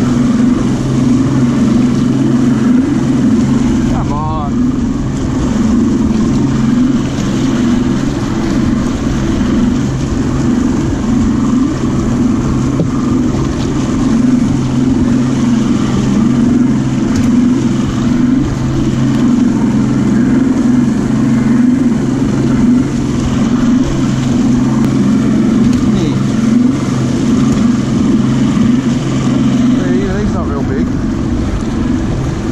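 Mercury OptiMax Pro XS two-stroke outboard running steadily at cruising speed with the boat on the plane, with wind and water rushing past the hull.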